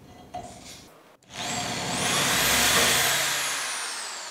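Electric drill running with its bit in a steel bracket: a loud motor whine that climbs in pitch as the drill speeds up, then slowly falls as it winds down.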